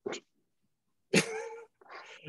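A man laughing: a short burst of laughter, then a longer, louder laugh about a second in.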